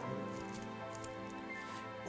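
Soft background music with sustained chords held steady, fading slightly.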